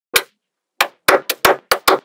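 Small magnetic balls clicking as blocks of them snap onto a wall built of magnetic balls: one sharp click just after the start, then a quick run of about six clicks in the second half.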